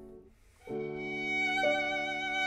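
Violin with piano accompaniment playing held notes: the sound fades to a brief gap, then a new phrase begins about two-thirds of a second in, with the violin stepping up in pitch near the end.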